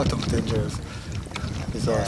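Brief fragments of a person's voice over a steady low rumble.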